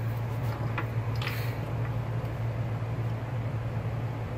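Steady low background hum in a workshop, with a few faint clicks as small deer antler pieces and a utility knife are picked up from a wooden workbench.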